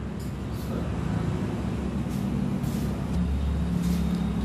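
Low, steady mechanical rumble, growing louder in the last second.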